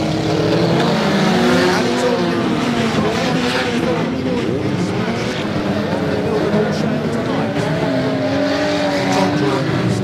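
Several banger-racing car engines revving together at once, their pitches rising and falling as the cars accelerate and back off. A few short knocks stand out, near two seconds in and near the end.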